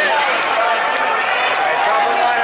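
Spectators talking close by, several voices overlapping, over the steady hubbub of a ballpark crowd.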